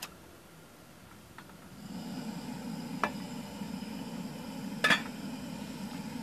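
Portable gas camp stove: a click, then about two seconds in the burner starts a steady hiss under the pot. A few light clicks of cookware fall over it.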